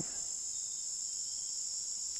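Steady, high-pitched chorus of insects such as crickets, continuous and unchanging.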